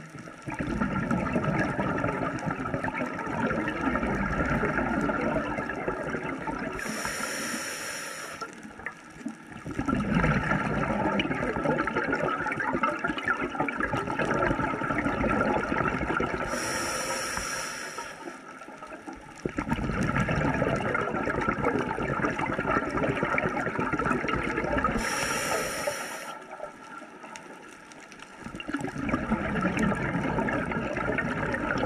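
A scuba diver breathing through a Mares regulator, heard underwater: long exhalations of rumbling, gurgling bubbles, broken three times by a short, quieter inhalation with a high hiss from the regulator, in a slow cycle of about one breath every nine seconds.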